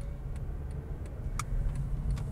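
Steady low rumble of a car's engine and road noise heard from inside the cabin while driving, with a few faint clicks, one a little over a second in.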